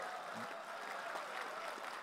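Faint, steady applause from an audience during a pause in a speech.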